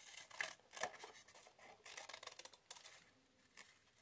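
Scissors snipping through a book-paper flower shape, cutting off petals: several short, faint snips spaced unevenly.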